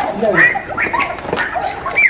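A dog giving short, high yelps and whines among people's voices.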